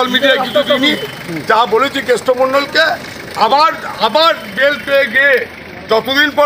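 A man speaking in a raised voice, in quick continuous phrases.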